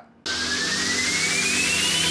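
Electronic music intro's noise riser: a rushing swell of noise with a thin tone rising steadily in pitch, starting about a quarter second in after a brief gap, building toward the drop.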